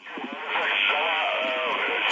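Kenwood TH-F7 handheld transceiver receiving the 40 m HF band at 7.150 MHz through its own speaker: steady, narrow-band static hiss with faint voices coming through, fading up over the first half second.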